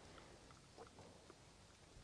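Near silence, with a few faint soft ticks.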